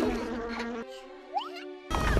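Cartoon bee buzzing sound effect: a steady pitched buzz that steps up in pitch a little under a second in, with a quick rising whistle, then cuts off suddenly just before the end.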